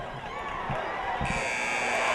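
Arena buzzer sounding about a second in and holding steady over the crowd noise, the kind that ends a cutting horse run's time.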